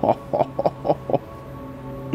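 A man laughing in five short pulses about a quarter second apart, over soft background music with held notes.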